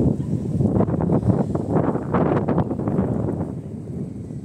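Wind buffeting a phone's microphone, a loud, gusty rumble that rises and falls and eases off toward the end.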